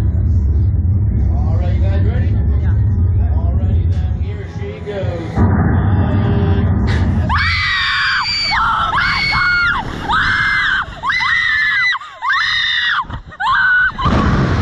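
Two riders on a reverse-bungee slingshot ride screaming, a string of short, loud, high screams that start about halfway through as the ride flings them upward. Before the screams there is a steady low rumble with faint talk underneath.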